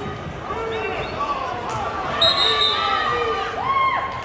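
Several voices shouting over one another in a large gym, the sound of coaches and spectators calling out during a wrestling bout, with a brief high squeak about two seconds in.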